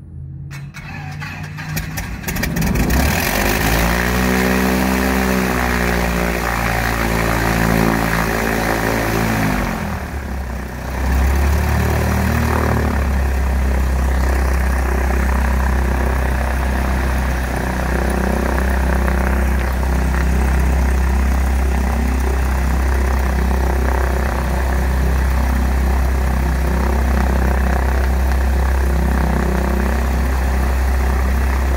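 Piper Cherokee 180's four-cylinder Lycoming O-360 engine starting: the starter cranks briefly with a rapid clatter, then the engine catches about two and a half seconds in. Its speed rises and then eases off over the next several seconds, dips briefly around ten seconds, and settles into a steady run with the propeller turning.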